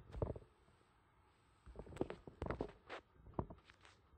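Faint, irregular small clicks and soft low knocks, several spread through a few seconds.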